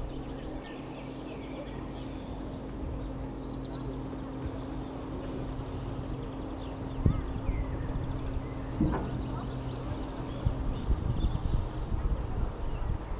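Wind noise on the microphone and a steady low machine hum while the booster ride stands still at the top, with faint bird chirps. There are a couple of short knocks in the second half, and the hum stops shortly before the end.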